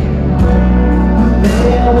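Live band playing loud through a PA: electric guitar and bass carrying sustained chords, with a man singing.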